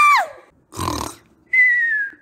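A high-pitched scream, held steady and then falling away just after the start. A brief noisy burst follows about a second in, and a thin, whistle-like falling tone comes near the end.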